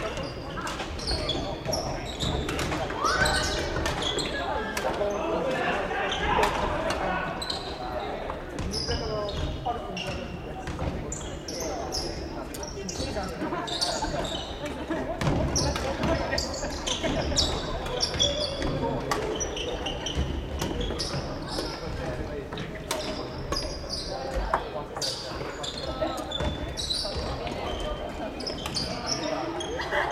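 Badminton rackets striking shuttlecocks on several courts at once, a rapid irregular run of sharp clicks, with players' voices echoing in a large sports hall.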